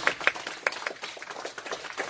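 A small group of people applauding by hand, the claps thick at first and thinning out toward the end.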